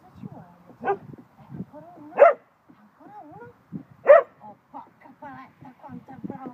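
A large dog barking three times, single sharp barks spread over about three seconds, the second and third the loudest, directed at a person hidden in a box.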